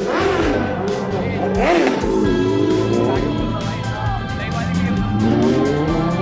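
A song with singing plays throughout, over sport motorcycle engines revving and passing, with rising revs near the end.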